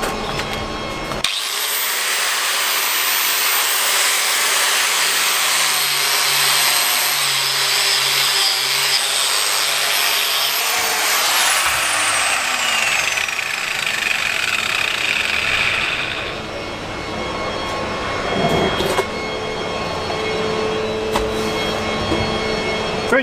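Angle grinder with an abrasive disc starting about a second in with a high whine, then grinding along a flat carbon-steel bar to take off the mill scale. The grinding eases off about three-quarters of the way through.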